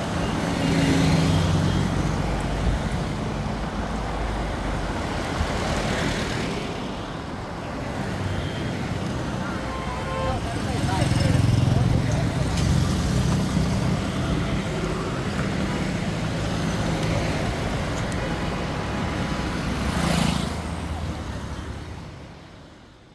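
A convoy of cars, vans and motorcycles driving past on a highway: a steady engine and tyre noise that swells as each vehicle goes by, with the loudest pass about halfway through.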